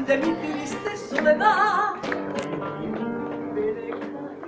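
Live flamenco-style song: a woman's voice holding a note with strong vibrato about a second and a half in, over a strummed Spanish guitar.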